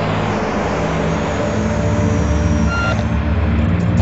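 Twin turbojet engines of the Scaled Composites White Knight carrier aircraft running at takeoff power during its climb-out, a steady loud rumble with a brief thin whine about three seconds in.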